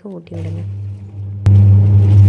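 Top-loading washing machine on its wash cycle: a steady low motor hum as the pulsator swirls the water. The hum becomes much louder after a sharp click about one and a half seconds in.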